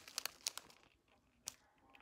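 Small clear plastic zip bags crinkling as they are handled, a few short crackles in the first half second or so and one more about a second and a half in.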